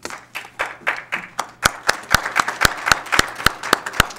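A small group applauding, with one person's claps loud and close to a microphone, about three to four a second, from about a second and a half in.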